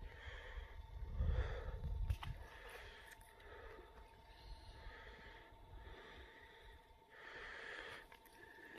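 A person breathing softly close to the microphone, faint puffs recurring every second or so, with a low rumble about a second in.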